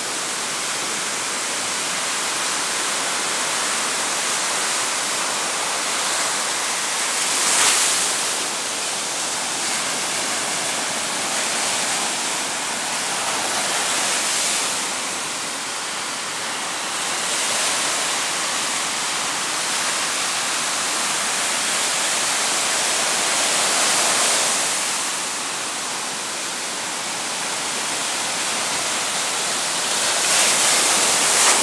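Ocean surf breaking and washing up a sandy beach: a continuous rush of water that swells and eases as each wave comes in, with the sharpest crash about eight seconds in.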